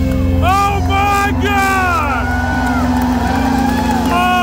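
A live band holding a sustained closing chord while audience members give high, falling 'woo' whoops, several in the first two seconds.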